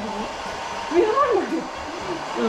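Handheld hair dryer blowing steadily while hair is being blow-dried, with a brief spoken phrase over it about a second in.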